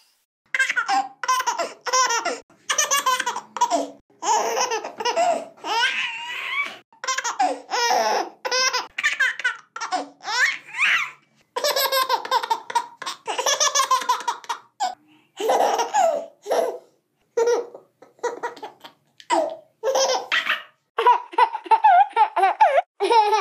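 A baby laughing in a long run of short, high-pitched bursts of giggles, broken by brief pauses.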